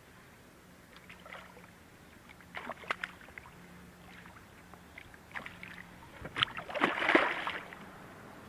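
A hooked bass splashing and thrashing at the water's surface beside a kayak, in a few short splashes, with the loudest and longest burst of splashing about six to seven seconds in.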